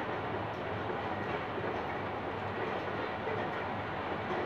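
Steady, even background room noise without speech, a low hiss-like rumble at moderate level.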